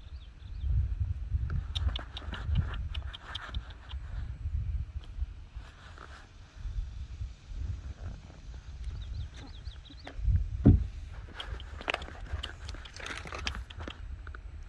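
Saddled horse standing and shifting, with scattered clicks and creaks of the saddle and tack over an uneven low rumble on the microphone. There is one louder thump about ten and a half seconds in.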